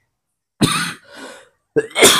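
A man coughing into his fist: a loud cough about half a second in, a weaker one right after, and another starting near the end.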